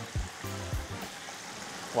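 Flour-coated chicken wings deep-frying in hot oil: a steady sizzle, with background music over it.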